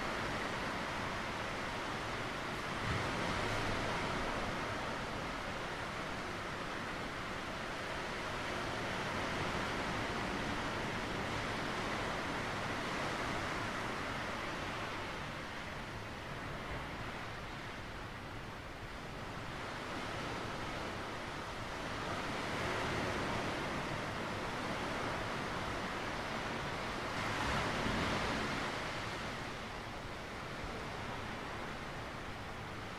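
Sea surf washing onto a rocky shore: a steady rush of water that swells louder every several seconds as waves break and draw back over the stones.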